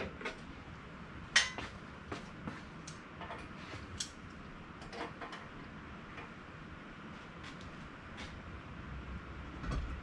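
Scattered metallic clicks and clinks from the work of lowering the transaxle out of the car, with one sharper knock about a second and a half in and a low rumble near the end.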